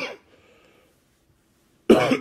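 A man coughing: a short cough right at the start, a quiet pause, then two more sharp coughs near the end.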